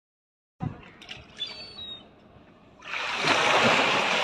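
Loud, steady splashing of water beginning about three seconds in, as a big tuna thrashes at the surface beside the boat. Before it there is a single knock and faint water noise.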